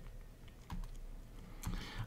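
A few faint, separate clicks and taps from a stylus on a pen tablet, over quiet room tone.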